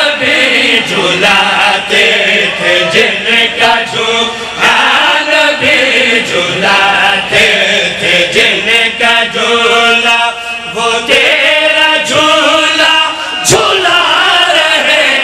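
Several men chanting devotional verse together through microphones: a lead reciter sings with others joining in, loud and continuous. There is a sharp click near the end.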